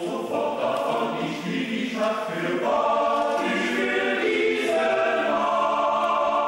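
Men's choir singing a cappella in close harmony, swelling about halfway through into a loud, held chord.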